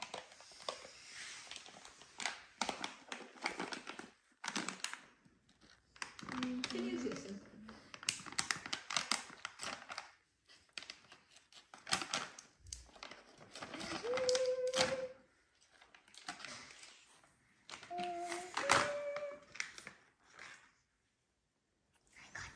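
Plastic dog-treat pouch crinkling as it is torn open and handled, in many short crackly bursts, with a few brief voiced notes in between.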